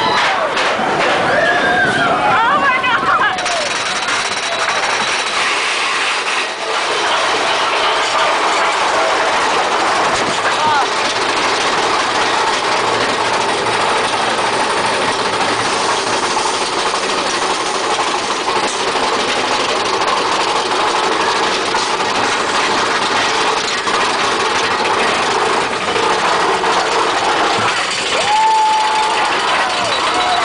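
Mine-train roller coaster climbing its chain lift hill: a long, steady mechanical clatter from the train and lift, with riders' voices at the start and again near the end.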